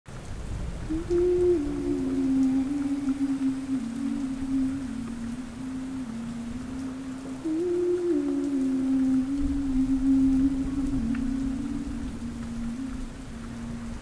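Steady rain, with a slow wordless melody of long held notes over it: a descending phrase that starts about a second in and is repeated about seven seconds in.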